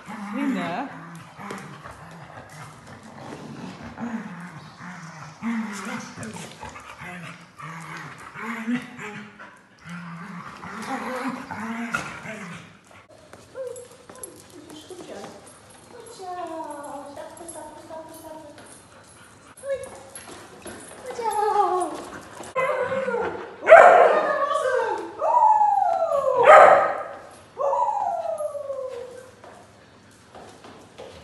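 Dogs vocalising in excited play: low grumbling noises at first, then high whines and howls gliding up and down in pitch, loudest about two thirds of the way through.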